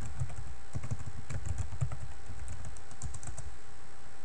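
Typing on a computer keyboard: a quick, irregular run of keystroke clicks as a word is typed and entered.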